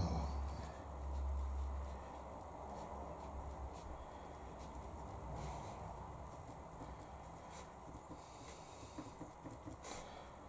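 Faint, occasional taps of a small flat brush dabbing paint onto watercolour paper, over a steady low background hum. A low rumble fades out in the first two seconds.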